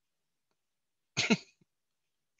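A man clears his throat once, briefly, a little over a second in; the rest is dead silence.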